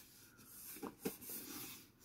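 Faint rubbing and scuffing of a cardboard box being turned over in the hands, with a couple of brief light knocks a little under a second in.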